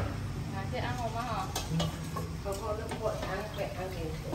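Quiet voices talking in the background, with a few light clicks of a utensil against a bowl while the tinted rice-flour batter is stirred.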